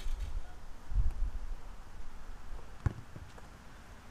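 Wind buffeting the microphone, strongest about a second in, and a single sharp thump of a football being played about three seconds in.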